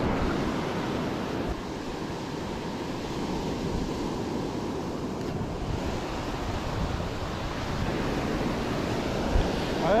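Surf breaking and washing steadily onto a sand beach, with wind rumbling on the microphone.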